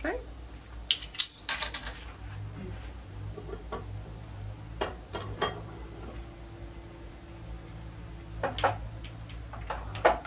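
Fired ceramic pieces clinking and being set down: a quick cluster of sharp clinks about a second in, then scattered lighter clinks and taps. A low steady hum runs underneath.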